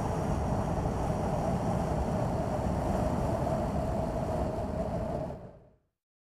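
Steady ambient background drone, a low rumble with a hum in the middle range, fading out about five and a half seconds in.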